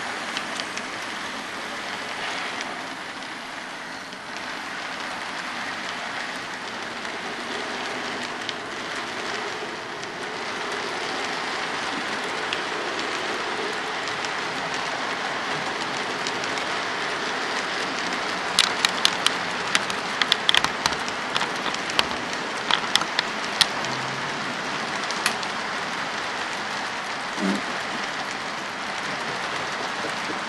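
HO scale model freight train rolling across a model truss bridge: a steady rolling hiss, with a run of sharp clicks about two-thirds of the way through.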